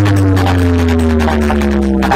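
Loud electronic music played through a large DJ sound-box system during a speaker check: deep held bass notes under long, slowly falling tones and a fast, dense beat.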